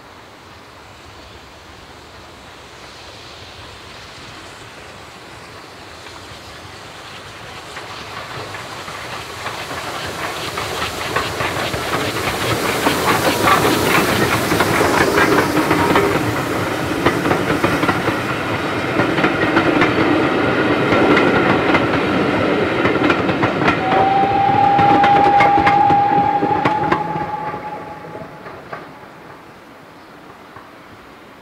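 GWR Small Prairie 2-6-2 tank steam locomotive No. 5542 and its coaches passing: the train approaches, then rolls by with a run of wheel clicks over the rail joints, and fades as the last coach goes. A steady high ringing tone sounds for a few seconds near the end.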